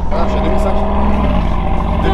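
Mercedes-AMG G63's tuned 5.5-litre biturbo V8 with a full Quicksilver exhaust, heard from inside the cabin while cruising gently: a steady low drone whose pitch steps down about a second in.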